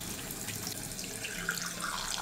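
Water running steadily from a bathroom sink tap while the face is being washed.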